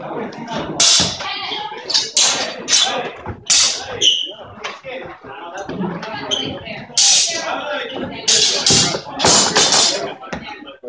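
People talking in a hall, broken by several short, loud, hissing bursts of noise, bunched around the first four seconds and again in the last three.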